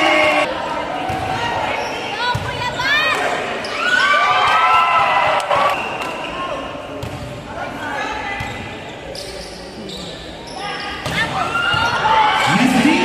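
Sneakers squeaking on a hard indoor court floor in short rising and falling squeals, mostly between about three and six seconds in, with a volleyball bounced on the floor several times before a serve. Voices of players and spectators carry through a large hall.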